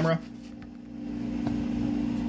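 A steady low hum with a few fixed pitches. It is quieter for under a second at the start, then holds level, with one faint click about one and a half seconds in.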